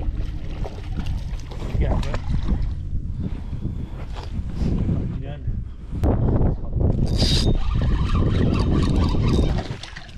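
Wind buffeting the microphone while a fish is fought and reeled in on a spinning rod and reel, with water splashing at the boat's side and a short hiss about seven seconds in.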